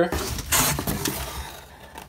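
Cardboard scraping and rustling as a cardboard insert is slid and pulled out of a cardboard shipping box, louder about half a second in and then fading off.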